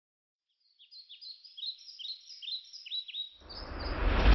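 A songbird chirping over and over, short high sweeping notes about three a second. Near the end a low drone swells in underneath.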